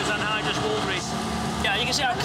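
Steady running hum of industrial centrifuges spinning wool-grease liquid, with a man's voice speaking over it near the start and again near the end.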